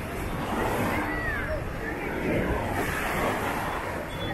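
Busy beach ambience: a steady rush of surf and wind on the microphone, with scattered distant voices.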